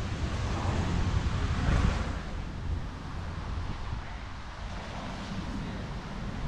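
Wind buffeting the camera microphone: a steady low rumble with no pitch, a little stronger in the first two seconds.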